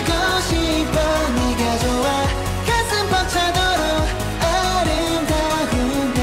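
K-pop boy-group song: male voices singing over a pop backing track with a steady drum beat.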